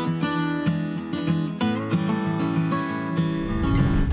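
Background music of strummed and plucked acoustic guitar, with the chords changing every half second or so.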